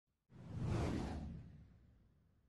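A single whoosh sound effect for an animated logo intro. It swells up a moment in, then fades away over about a second.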